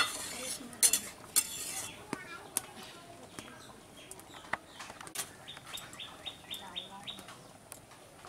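A metal ladle clinking against a metal cooking pot: two sharp ringing clinks in the first second and a half, then lighter scattered taps. Small birds chirp in a quick series in the second half.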